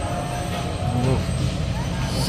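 Busy supermarket ambience: a steady low rumble with faint voices of other shoppers in the background.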